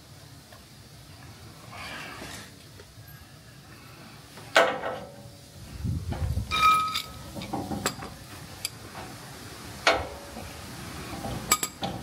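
Scattered metallic clinks and taps from a nut being threaded by hand onto the end of a leaf-spring bolt, with a sharp knock about a third of the way in and a clink that rings briefly about halfway through.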